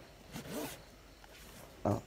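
A short scraping rustle of a cardboard box sliding against the boxes stacked around it as it is pulled out, about half a second in.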